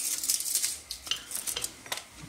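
Hands handling leaves and cucumber halves in an enamel bowl of brine: rustling and light splashing for about a second, then a few small knocks and clicks.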